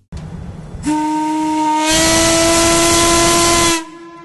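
Steam whistle on the funnel of the paddle steamer Stadt Zürich (1909) blowing one long steady blast of about three seconds. It starts out of a hiss of steam, swells louder about halfway through and cuts off sharply just before the end.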